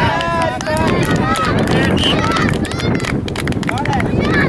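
Young footballers shouting and calling out, several high voices overlapping, over a steady rumble of wind on the microphone.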